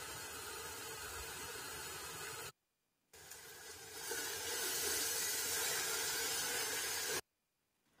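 Tomato and chickpea sauce sizzling and simmering in a metal pot as a steady hiss, with a wooden spoon stirring it in the louder second stretch. The sound cuts to silence twice, briefly.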